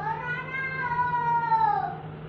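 One long, high-pitched cry lasting nearly two seconds, rising slightly in pitch and then dropping near the end.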